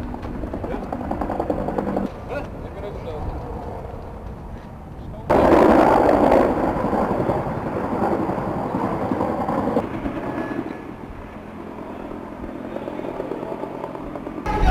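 Indistinct low voices over steady outdoor background noise. About five seconds in, a much louder stretch of noise starts suddenly and drops back about four seconds later.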